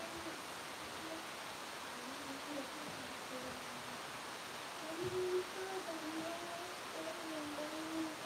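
A person softly humming a slow, wandering tune, with a soft knock about five seconds in.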